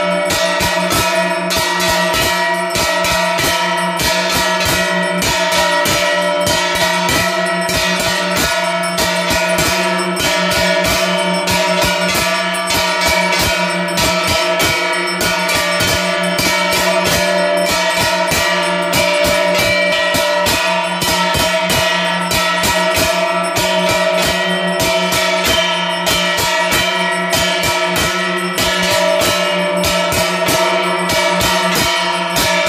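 Brass hand bell (ghanta) rung continuously in rapid, even strokes during an aarti, its ringing tones overlapping into a steady, loud jangle.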